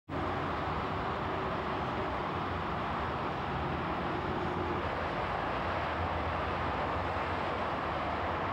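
Steady background noise with a low hum and no distinct events.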